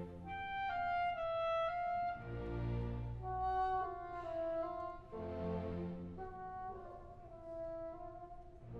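Symphony orchestra playing a soft instrumental passage with no voice: wind instruments carry a melody of short held notes, while low chords swell in about two seconds in and again about five seconds in.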